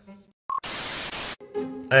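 A short beep followed by a burst of static hiss lasting under a second that cuts off abruptly: an editing transition sound effect.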